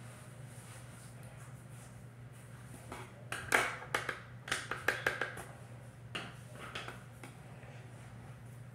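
A flurry of sharp clicks and short taps from small plastic items being handled, bunched in the middle few seconds, over a steady low hum.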